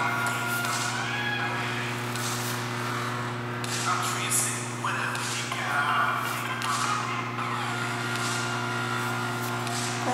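Steady low electrical hum with faint, indistinct voices over it.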